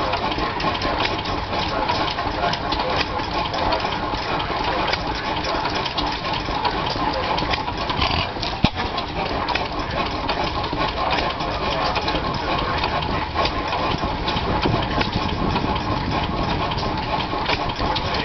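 16 hp Galloway single-cylinder stationary gas engine running steadily, with one sharp crack a little before halfway.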